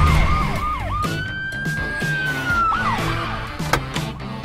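Police-style siren: quick rising-and-falling yelp cycles for about the first second, then one long held wail that falls away near the three-second mark, over background music.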